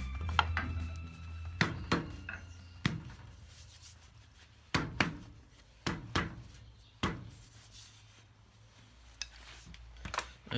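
About ten sharp, hollow knocks at uneven intervals, from a hand striking a large oak turning blank that is held in a lathe chuck.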